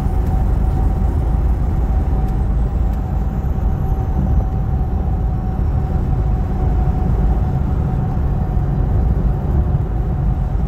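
Steady road and engine noise heard inside a truck cab cruising at highway speed: a continuous low rumble with a faint steady hum running through it.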